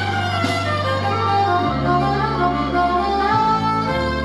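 Solo saxophone playing a slow gospel melody over a backing accompaniment of long-held bass notes, which change twice.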